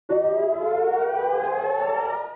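Air-raid siren sounding, starting abruptly and rising slowly and steadily in pitch.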